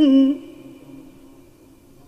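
A Quran reciter's voice ending a long held note of melodic mujawwad recitation about a third of a second in, followed by a fading echo and low room noise.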